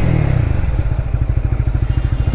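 Honda CBR150R's single-cylinder engine dropping off the throttle to low revs, running with a rapid, even beat as the bike rolls slowly.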